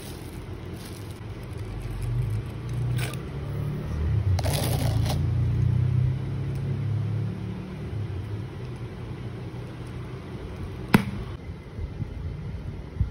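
Clear plastic wrap crinkling and crackling as it is pulled off a hard-shelled clutch bag, with the loudest burst of crackling about four to five seconds in, over a low rumble. A single sharp click near the end.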